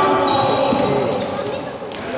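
Basketball being dribbled on a sports-hall floor during play, ringing in a large hall, with players' voices in the background.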